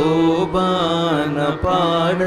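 Carnatic-style devotional song: a solo voice singing with sliding, ornamented pitch over a steady drone, with a couple of drum strokes.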